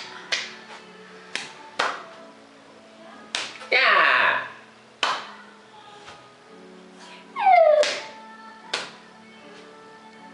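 Hand claps and palm slaps from a child and an adult playing a clapping game, sharp and irregularly spaced. There are two loud vocal outbursts among them: one about four seconds in, and a high cry falling in pitch about seven and a half seconds in.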